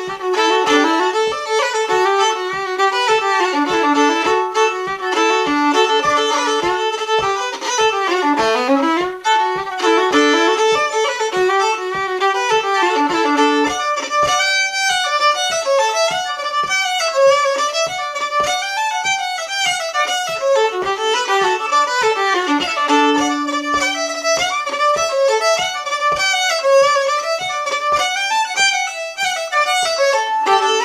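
Solo fiddle playing a fast Irish reel in a steady run of quick bowed notes, the tune moving up to higher notes about halfway through. A soft low thump keeps time about twice a second underneath.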